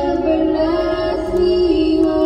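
A hymn sung over music, the voice holding long sustained notes that step from one pitch to the next, with a low steady rumble underneath.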